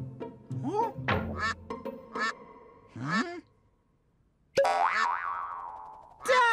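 Children's cartoon music and sound effects: short springy boing-like pitch glides over a low bass tune, then a brief pause. About four and a half seconds in, a sudden loud burst sweeps and fades away as the surprise egg pops open.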